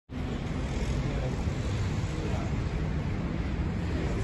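Outdoor city street ambience: a steady low rumble of traffic noise, with faint voices in it.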